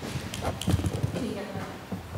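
A few soft, irregular knocks and taps, with low voices behind them.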